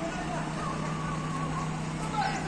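Steady low hum of vehicle engines idling in a queue of cars and a truck, with faint voices in the background.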